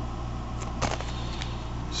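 Steady low hum in the room, with faint ticks and one brief crinkle a little under a second in as a small plastic zip bag of loose plastic brick pieces is handled.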